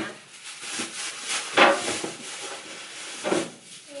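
A plastic bag rustling as vegetables are handled and set into an open refrigerator, with louder rustles or knocks about a second and a half in and again a little after three seconds.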